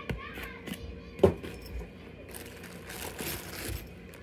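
Handling noise from a cardboard box: a sharp knock about a second in, then a plastic bag crinkling for a second or so as a wrapped cordless drill is pulled out of it.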